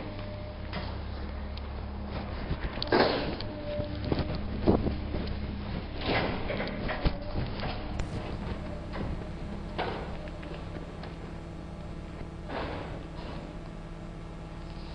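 Scattered knocks, thuds and rustles over a steady low hum, the loudest thuds about three, five and six seconds in.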